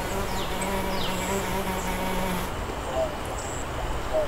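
A fly buzzing in a steady drone, cutting off suddenly about two and a half seconds in.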